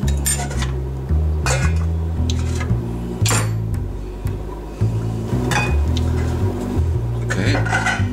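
A stainless steel pot and its lid knock and clink a few times while boiled potatoes are drained of their cooking water. The loudest clank comes about three seconds in.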